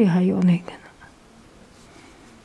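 A short spoken utterance in the first half second, then faint, steady room noise.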